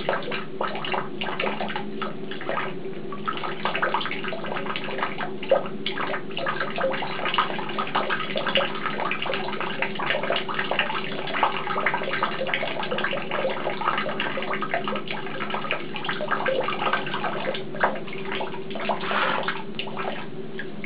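Thin stream of tap water running and splashing into a plastic basin, with irregular splatters and drips as a cat paws at the falling water and licks it from its paw. A steady low hum lies beneath the splashing.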